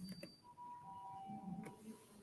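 Faint electronic music notes: a brief high tone, then two held notes, the second lower and overlapping the first, with a couple of soft clicks.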